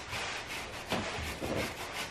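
Several short scrubbing strokes of a brush rubbing against the armchair's upholstery as it is cleaned with soap and water.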